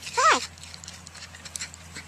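Porcupine vocalising: one short whining call that slides down in pitch a fraction of a second in, followed by faint scattered clicks.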